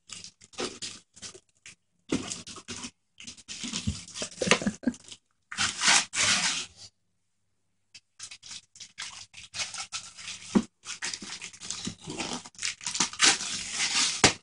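Wrapping paper crinkling and tearing as a present is unwrapped by hand, in irregular bursts with a short pause a little past halfway.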